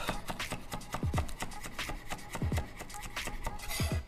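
Chef's knife rapidly chopping chives on a wooden cutting board: a fast run of short knocks of the blade on the wood. Background music with a deep beat runs under it.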